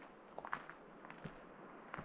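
Faint footsteps on a dirt and gravel path, soft irregular steps a few tenths of a second apart.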